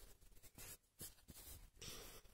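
Faint scratching of a pencil drawing on paper, in a few short strokes.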